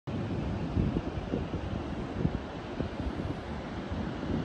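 Wind buffeting the microphone, an uneven low rumble that gusts up and down.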